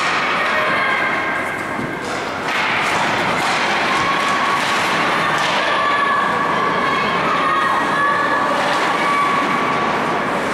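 Ice hockey in play: skate blades scraping the ice, scattered knocks of sticks, puck and boards, and held shouts from players or spectators over the rink noise.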